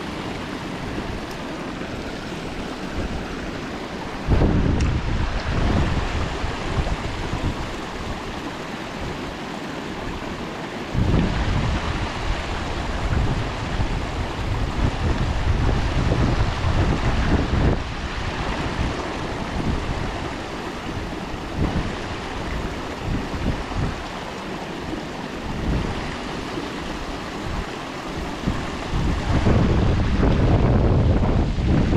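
Creek water spilling over a rock ledge in a steady rush, with gusts of wind buffeting the microphone about four seconds in, again from about eleven to eighteen seconds, and near the end.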